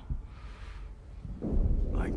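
A low rumble that swells about one and a half seconds in.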